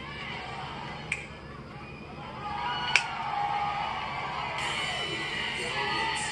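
Wrestling arena crowd noise building, then entrance music kicks in suddenly about four and a half seconds in. There are two sharp clicks, about one and three seconds in.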